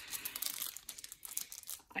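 Foil booster-pack wrapper crinkling as it is handled and torn open, a dense papery crackle.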